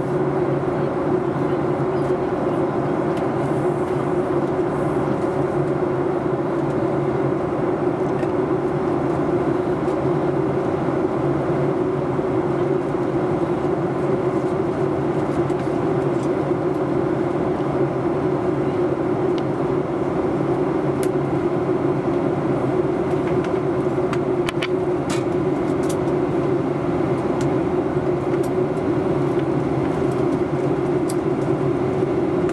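Steady drone of a Boeing 737-800's cabin in flight, engine and airflow noise with a low hum, heard while the jet descends. A few faint ticks come through about twenty-odd seconds in.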